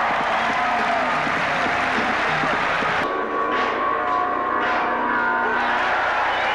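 Large arena crowd noise, a dense roar of cheering and voices. About three seconds in it cuts abruptly to music with steady held notes over quieter crowd sound.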